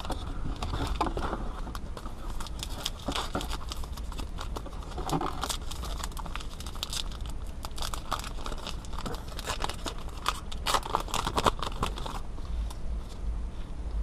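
A baseball card pack's wrapper crinkling and tearing as it is ripped open by hand, with many small sharp crackles throughout.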